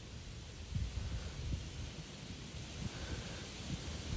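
Low, irregular rumble of wind and handling noise on a phone's microphone, with a few soft thumps.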